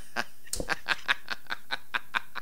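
A man laughing in a run of quick, short bursts.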